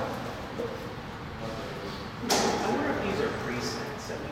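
Indistinct speech in a room, with a sudden sharp noise a little over two seconds in, followed by more voice.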